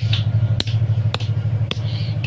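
Three sharp knocks about half a second apart: a hand-held stone pounder striking brick chips against a flat stone to crush them into brick dust. A steady low hum runs underneath.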